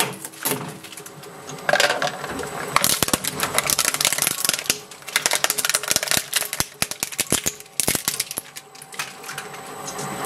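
Twin-shaft shredder's steel cutters cracking and crunching small plastic items, first a plastic ball and then a bubble fidget toy, in a run of rapid, irregular sharp clicks and snaps. The cracking is densest and loudest around two seconds in and again from about three to four and a half seconds.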